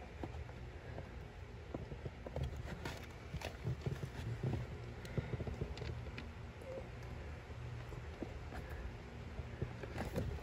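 Faint, scattered small clicks and scrapes of bolts being started by hand into a plastic cabin air filter cover, over a low steady hum.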